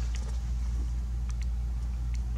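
Room tone: a steady low hum with a few faint clicks.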